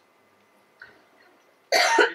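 Near silence, then a man coughs loudly and sharply near the end.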